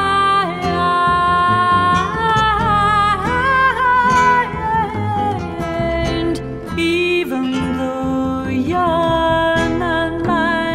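Jazz song: a woman's voice sings a wordless, gliding melody over guitar and bass.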